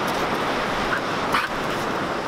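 Steady rush of surf and wind on the microphone at a beach, with a short high call from a dog about a second and a half in.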